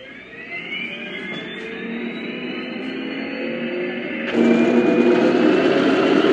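Heng Long RC Abrams tank's built-in sound unit playing its simulated engine start-up through a small speaker: a rising whine that climbs for about four seconds, then a sudden jump to a louder, steady running sound.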